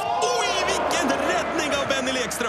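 Several voices at once over background music, with no clear impact sounds.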